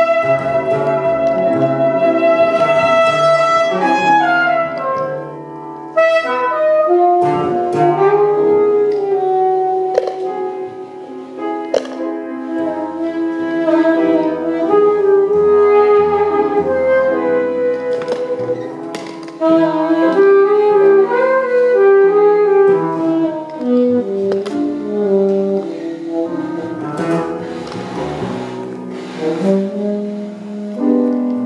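Free-improvised jazz from a trio of saxophone, piano and double bass: the saxophone plays long held and wandering notes over low bass notes and scattered piano attacks.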